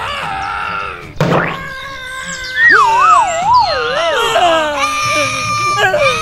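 A short hit about a second in, then a high, wavering cartoon-style crying voice whose pitch wobbles and slides downward, like a character sobbing.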